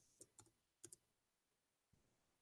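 Faint clicks of a computer keyboard, four keystrokes in two quick pairs within the first second and a faint fifth near the end.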